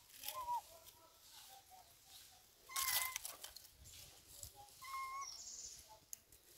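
Infant long-tailed macaques giving short, high-pitched calls: three brief coos, the loudest near the middle with a scuffling rustle.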